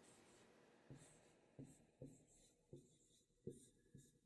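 Faint strokes of a marker writing on a board, about five short scratches spread across the few seconds as two words are written.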